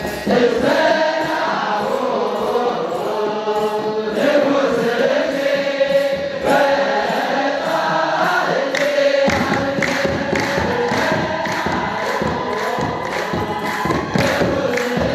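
Eritrean Orthodox liturgical chant: a group of men singing a hymn in unison to the steady beat of kebero drums. The drumming gets deeper and heavier about nine seconds in.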